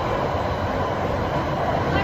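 London Underground train running, heard from inside the carriage: a steady loud rumble of wheels and running gear on the rails.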